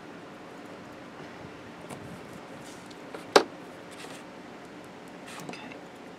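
Hands handling and pressing a glued card album page flat, with faint rustling of paper and card. There is one sharp tap a little past halfway through.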